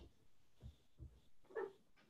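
Near silence: room tone, broken by a few faint, brief sounds.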